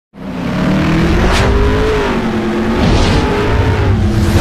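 Intro sound effect of a racing-car engine running at a steady, slightly rising and then easing pitch over a low rumble, with two whooshes, one about a second and a half in and another around three seconds.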